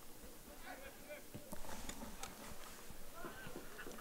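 Faint open-air field ambience with distant shouts and calls from soccer players, and a few short knocks.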